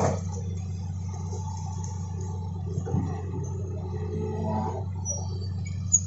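Hitachi hydraulic crawler excavator's diesel engine running steadily as the boom lifts the bucket, with a knock right at the start and a smaller one about three seconds in.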